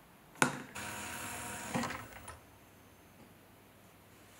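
A sharp knock, about a second of steady hiss, a second knock, then near quiet.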